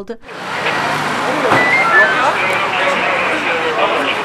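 Street ambience: several people talking over one another, with a steady wash of traffic noise behind them.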